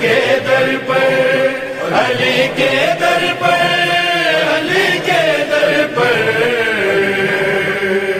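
Unaccompanied chanted recitation of an Urdu devotional manqabat: a voice drawing out long melodic lines that glide between pitches, ending on a long held note.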